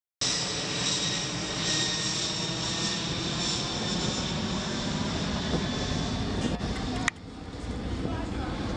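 Large multi-engine airplane flying low overhead. Its engines make a loud, steady noise with a high whine, which cuts off abruptly about seven seconds in to quieter outdoor sound.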